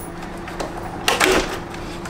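Handling noise starting about a second in: a short scrape and rustle as the Evolve GTR electric skateboard's battery pack is pulled out of its deck enclosure. A faint steady hum runs underneath.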